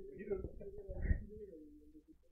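A man's voice holding a long, wordless hesitation sound, a drawn-out 'ehh' or hum that wavers and then slides lower before trailing off. A low thump comes about a second in.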